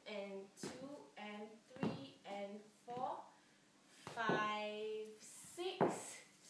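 A woman's voice calling out the dance rhythm in short, partly held syllables, with a few sharp taps.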